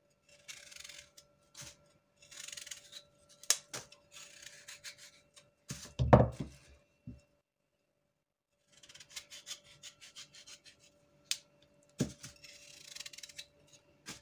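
A thin plastic bag rustling and crinkling in several short spells as chunks of raw pumpkin are cut and dropped into it. Sharp clicks of a knife on the pumpkin and the wooden cutting board come between them, with one loud dull thud about six seconds in.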